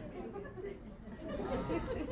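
Faint murmur of several people chatting quietly in a room, with soft voices rising a little near the end.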